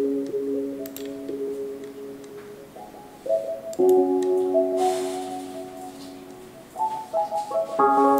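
Music: slow piano chords opening a song, each held and fading, with new higher chords struck about three and a half seconds in and again near the end. A soft hiss swells briefly in the middle.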